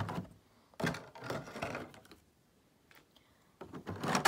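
Thin plastic packaging tray being handled: a few short crinkles and taps of plastic, with quiet gaps between.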